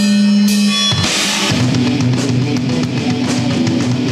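Live rock band starting a song: a held note, a cymbal crash about a second in, then the drum kit and distorted electric guitars kick in with a steady beat.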